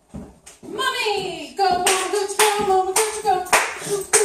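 A person's voice singing in drawn-out notes, starting just under a second in, with sharp noisy bursts about every half second.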